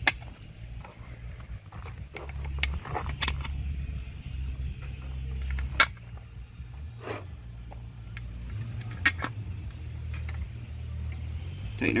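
Hands handling a plastic twist-port adapter and its screws on the back of a dish antenna: a few scattered sharp clicks and taps. Under them runs a steady low rumble and a faint steady high-pitched whine.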